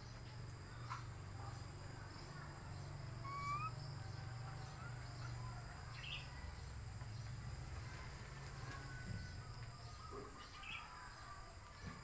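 Outdoor insect chorus, a steady high-pitched drone throughout, with a few short bird chirps and one rising whistle about three and a half seconds in, over a low rumble.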